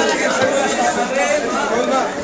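Several people talking over one another in a busy chatter of voices.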